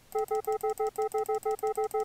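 A Max 7 granulator playing the same 100-millisecond grain of a sample over and over, about seven identical short pitched blips a second. Each blip sounds the same because the grain start is set to a single fixed point in the sample, not a random range.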